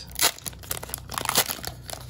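Foil wrapper of a Pokémon Sword and Shield booster pack crinkling and tearing as it is ripped open by hand, with two louder rips, one just after the start and one a little past the middle.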